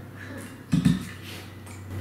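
A large water bottle set down on a table with one short, solid thump a little under a second in, among light clinks of forks in bowls.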